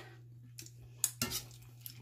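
Metal slotted spoon clinking and scraping quietly against a cast iron skillet of onions in gravy. There is a sharp clink about a second in and a smaller one near the end.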